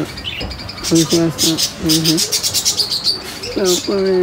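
Small birds chirping in quick, rapid runs, with a lower voiced call repeated at intervals beneath them.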